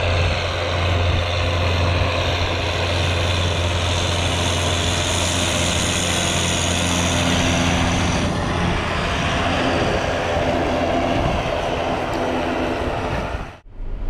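A John Deere 6930 tractor's six-cylinder diesel running steadily under load as it pulls a Kuhn Cultimer L300 stubble cultivator through the soil. Its low engine hum sits under a broad noise of the tines working the ground.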